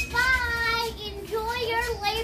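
A child singing in a high voice: a long held note, then a wavering second phrase.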